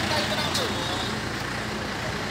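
Mahindra 585 DI tractor's four-cylinder diesel engine running steadily.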